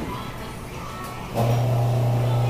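Faint room background, then a loud, steady low hum starts suddenly about one and a half seconds in and holds at one pitch.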